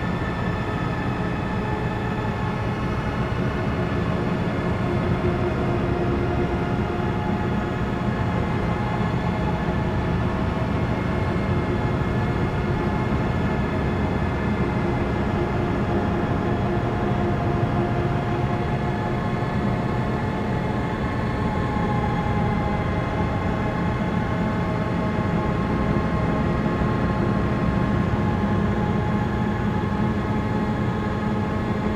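Psychedelic noise music: a dense, steady drone of many layered sustained tones over a thick low rumbling wash, holding the same level throughout.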